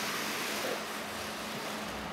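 Steady hiss with a faint constant hum from a room heater, while a Permobil F5 powered wheelchair drives forward over a wooden floor almost silently.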